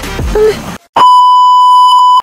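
A sung music track breaks off less than a second in. Then a loud, steady, high-pitched test-tone beep starts, the kind played with TV colour bars.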